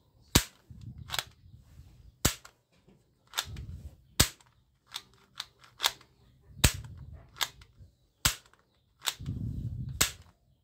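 Plastic toy pistol being cocked and dry-fired by hand: a series of sharp plastic clicks, about one a second, with short scraping sounds of the slide being worked between them.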